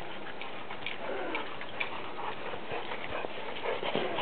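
A dog running through snow after a ball and picking it up: soft, irregular footfalls and faint clicks over a steady background hiss.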